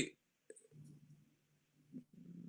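A quiet pause in talk: a small mouth click about half a second in, then a faint, low hum of a man's voice as he hesitates.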